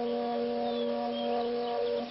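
A steady electronic synthesizer tone held on one low note, a buzzy sound-effect drone.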